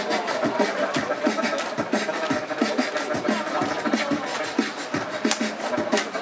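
Two beatboxers performing into microphones over a PA: a fast, steady beat of vocal kick and snare sounds, with a held humming tone running under it.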